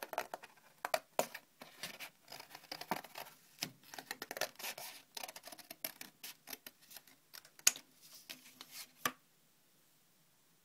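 Scissors snipping through thin coloured cardboard in many short, quick cuts, with the card rustling in the hand. The cutting stops abruptly about a second before the end.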